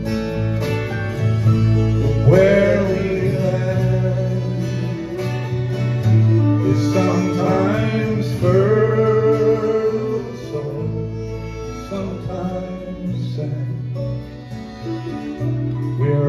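Live country band playing an instrumental stretch of a song, no words sung: strummed acoustic guitars, bass and drums, with a fiddle bowing a melody over them. The band dips in loudness toward the end, then swells again.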